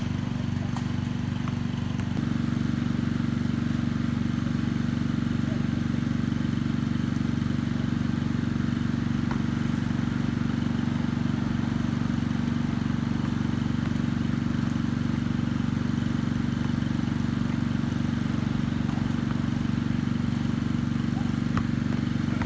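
A steady, low-pitched engine drone made of several held tones, shifting slightly about two seconds in and then running unchanged.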